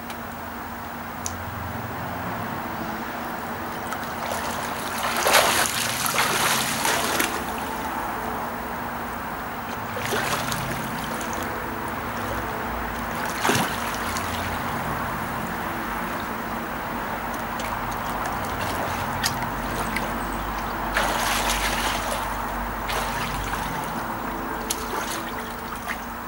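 Water splashing and sloshing as a swimmer moves through a pool, with louder splashes of strokes and turns about five seconds in, around ten and fourteen seconds, and again past twenty seconds. A steady low hum runs underneath.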